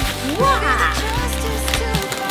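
Background music: a sustained low bass under a melody whose notes slide up and down in pitch.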